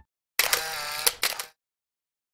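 A brief intro sound effect like a camera shutter, starting about half a second in and ending about a second later in a run of quick clicks.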